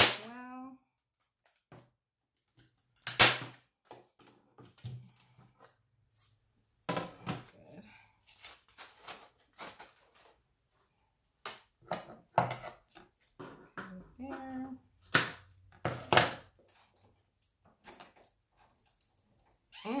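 Heavy-duty hand staple gun firing into a wooden board, two sharp snaps about three seconds apart. Scattered quieter clicks and taps follow.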